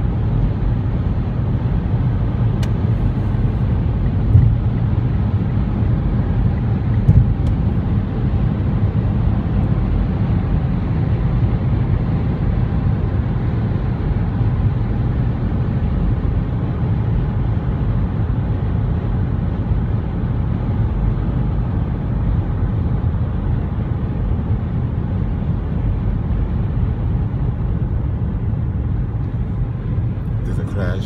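Steady road and engine noise heard inside a car cruising at highway speed, mostly a low rumble, with two brief knocks about four and seven seconds in.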